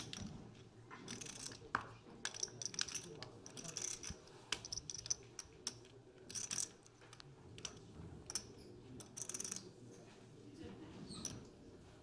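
Poker chips clicking and clattering at the table in irregular short bursts, thinning out near the end.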